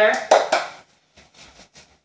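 Floury hands rubbing together: one short dry rub, then a few faint soft rustles.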